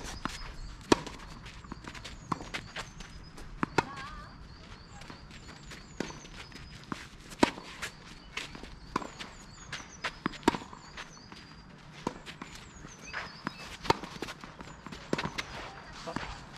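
Tennis rally on a clay court: sharp racket strikes on the ball every three seconds or so, with ball bounces and players' footsteps on the clay between them.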